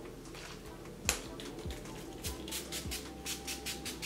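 NYX Dewy Finish setting spray's pump sprayer misting onto the face: a sharp click about a second in, then a quick run of short spritzes, about six a second, through the second half, with faint background music underneath.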